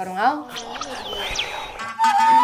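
A voice finishes a phrase, then a rushing, hissing sound with gliding whistle-like tones runs for over a second, the kind of sweep used as a transition in a radio programme. Music begins just at the end.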